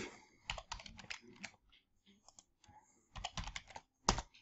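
Quiet computer keyboard typing: two short runs of keystrokes, about half a second in and again near the end.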